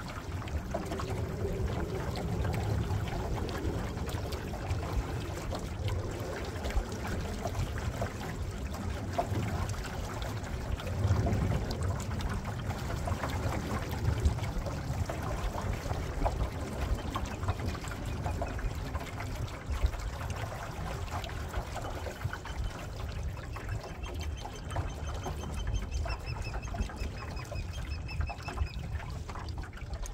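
Water sloshing and trickling along the hull of a small boat under way, with a steady low rumble of wind on the microphone. From about two-thirds of the way in, a bird calls with repeated short, high chirps.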